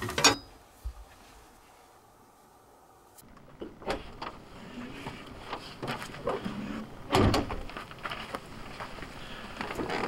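Scattered knocks and clunks of a travel trailer's door, footsteps and a folding camp chair as a person steps out and sits down, the loudest clunk about seven seconds in. The first few seconds are quiet.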